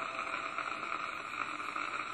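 Steady hiss and crackle from the surface of a 78 rpm shellac record as the gramophone's needle keeps running in the groove with no music left playing.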